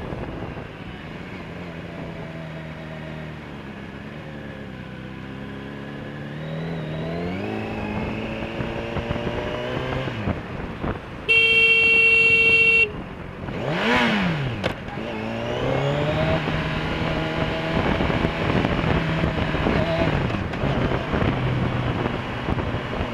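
Motorcycle engine running through the gears, its pitch climbing and dropping as it accelerates and eases off. About eleven seconds in, a loud steady horn blast sounds for about a second and a half: a warning at a car moving across into the rider without indicating. A quick rev follows just after.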